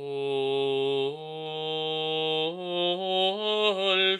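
A solo male voice singing Gregorian chant unaccompanied. Long held notes step upward in pitch, then give way to a run of shorter, quickly changing notes near the end.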